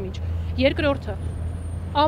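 A woman's voice, a few words about halfway through and again at the end, over a steady low rumble.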